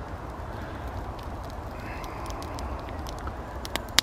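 Small wood fire crackling with a few sharp pops, over a steady low rumble of light breeze on the microphone. A faint bird call comes around the middle.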